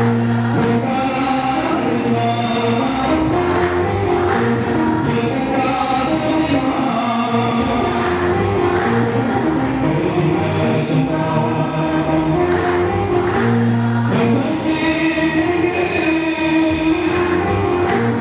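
Ethiopian Orthodox hymn (mezmur) sung without a break: a male singer leading into a microphone, with many voices singing together like a choir.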